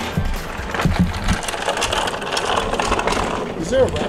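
Large wheeled shipping crate rolling over concrete sidewalk slabs, with a steady low rumble and rattle from its casters and metal-edged case. Voices come in near the end.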